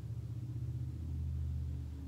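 A low rumble that swells a little past the middle and then fades away.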